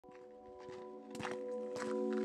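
A sustained music chord fades in, while footsteps fall about every half second, growing louder toward the end.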